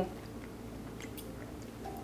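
Faint mouth sounds of someone chewing food, with a few soft small clicks.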